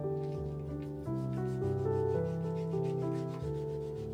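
A wide-bladed kitchen knife slicing through a tomato onto an end-grain wooden cutting board, a rapid run of short strokes of the blade against the wood, over soft background music.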